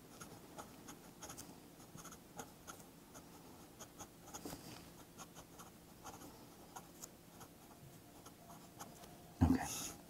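Faint scratching of a pen on paper in short, irregular strokes as words are hand-lettered.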